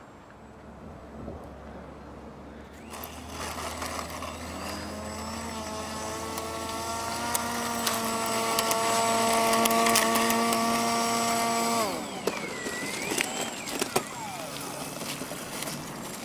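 Propeller and motor of a radio-controlled scale model of a Drifter ultralight making a low fly-by: a steady droning hum grows louder over several seconds, then drops in pitch and fades as it passes, about twelve seconds in.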